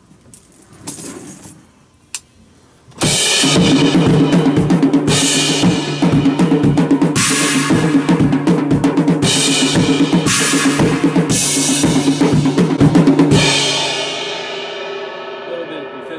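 Acoustic drum kit played hard in a heavy metal beat for a studio take. Bass drum, snare and cymbals come in about three seconds in, with loud cymbal crashes about every two seconds. The playing stops near the end, leaving the cymbals ringing out.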